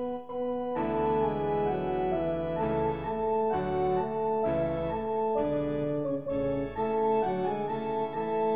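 Synthesized instrumental accompaniment with an organ-like keyboard tone, playing sustained chords that change every half second to a second.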